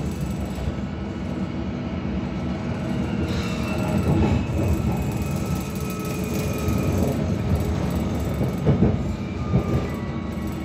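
London Underground S8 Stock train running on the Metropolitan line, heard from inside the carriage: a steady low rumble of wheels on rail with faint high tones drifting slowly lower. The rumble grows louder briefly about four seconds in and again near nine seconds.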